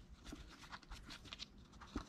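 Faint handling noise: a leather shift boot rustling and ticking softly as it is pushed onto the posts of a plastic shift-boot surround.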